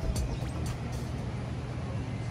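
Background music fading out in the first moments, leaving a steady low rumble with an even hiss of outdoor ambience.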